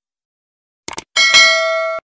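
Two quick clicks, then a bright bell chime that rings on for most of a second and cuts off suddenly: the sound effects of a subscribe-button and notification-bell animation.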